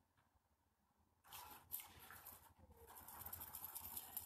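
Near silence, with faint scattered soft ticks and noise from about a second in, growing slightly toward the end.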